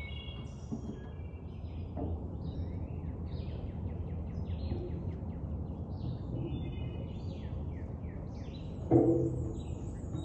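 Several songbirds chirping and calling, short repeated phrases, over a low steady background noise. A brief louder sound comes near the end.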